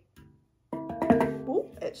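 Steel handpan in D minor struck by hand about two-thirds of a second in, several notes starting together and ringing on, played uncovered with its bottom opening free to resonate.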